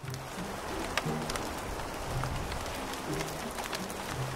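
Steady hiss of heavy rain, a rain sound effect, with soft background music of short, low held notes over it.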